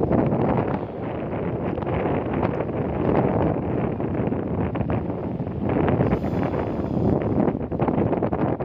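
Wind buffeting a phone's microphone: a steady rushing noise that swells and dips in gusts.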